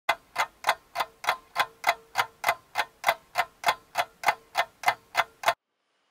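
Ticking clock sound effect: sharp, evenly spaced ticks about three times a second, stopping suddenly near the end.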